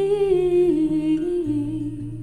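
A woman humming a slow wordless melody in long held notes over acoustic guitar, the pitch stepping down twice.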